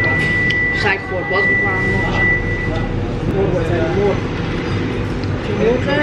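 Indoor store ambience: distant voices over a steady low hum, with a high, steady electronic beep held for about three seconds near the start.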